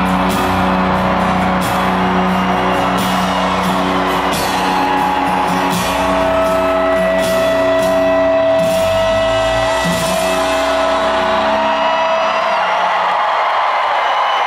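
Live rock band playing the final chords of a song, the instruments ringing out together, with one long held note through the middle and the bass dying away near the end.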